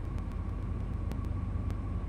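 Steady low hum of background noise, with a faint thin high tone above it.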